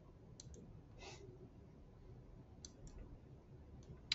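Near silence with a few faint, short computer mouse clicks, spaced irregularly.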